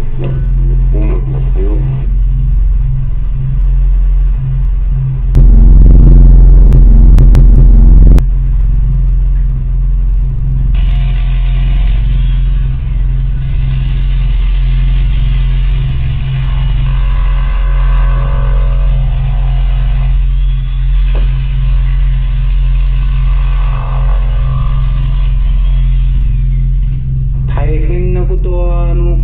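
Excavator at work: a steady low engine rumble, with a loud stretch of scraping and knocking lasting about three seconds, starting about five seconds in, as the bucket digs into soil and stones. In the second half a fuller, wavering sound that may be music joins the rumble.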